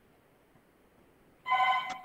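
Near silence, then about one and a half seconds in a loud electronic ringtone starts, made of several steady pitches sounding together.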